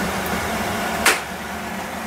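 Steady kitchen background noise, with one sharp click of a utensil or bottle about halfway through, while soy sauce is being measured with a plastic measuring spoon.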